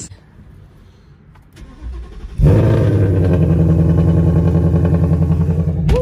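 A 2018 Ford Mustang GT's 5.0-litre V8 starts up about two and a half seconds in and settles into a steady idle, running through its reinstalled stock exhaust with the dump cutouts removed.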